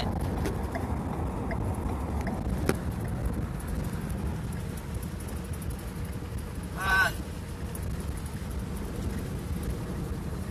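Steady low rumble of a vehicle driving on the road, heard from inside the cab. A faint click comes near three seconds in, and a short voice sound about seven seconds in.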